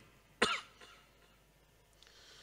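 A single short cough from a man into a microphone, about half a second in.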